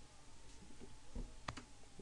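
A single sharp computer mouse click about one and a half seconds in, with a softer low thump just before it, over faint room noise.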